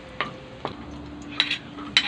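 A spatula stirring and scraping browned pork pieces in an aluminium wok, knocking sharply against the pan a few times, with light sizzling from the frying fat.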